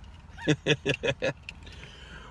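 Low, steady rumble inside a car cabin. About half a second in, a man makes a quick run of about six short voiced sounds, chuckle-like.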